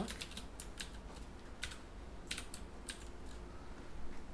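Computer keyboard typing: scattered keystrokes, a quick cluster at the start and then single clicks spaced out every half second to a second.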